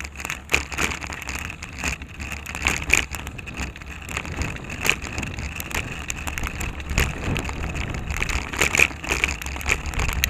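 Bicycle riding over rough, cracked asphalt, heard through a camera mounted on the bike: a steady low rumble with frequent rattles, clicks and knocks from the bike and its mount jolting on the pavement.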